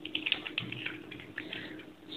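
Typing on a computer keyboard: a quick run of key clicks that thins out toward the end.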